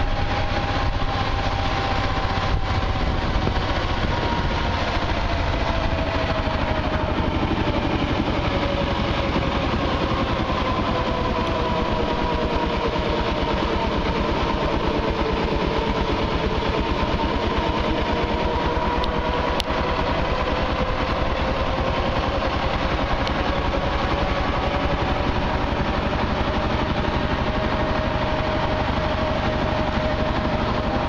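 Small engine of a three-wheeled auto-rickshaw heard from the passenger seat, running steadily as it drives along, with road rumble. Its pitch drifts slowly lower and then back up as the speed changes.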